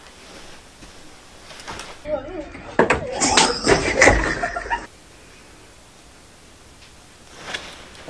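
Voices in a lower-quality, phone-recorded video clip, heard for about three seconds in the middle. Before and after them there is quiet room tone.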